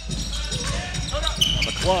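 Basketball being dribbled on a hardwood court: repeated short bounces, with arena voices.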